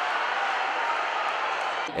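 Steady murmur of a crowd of spectators at an indoor futsal match, with no distinct cheers or impacts standing out.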